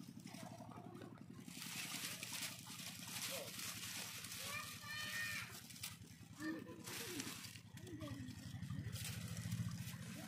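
Faint outdoor ambience with a steady low hum and faint distant voices, heard about halfway through and again near seven seconds.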